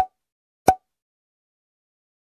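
Two short cartoon-style pop sound effects, less than a second apart, each with a brief pitched tone.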